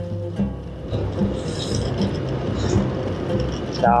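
Rushing road and wind noise from a motorbike riding along a dirt road, under background music with a repeating low beat.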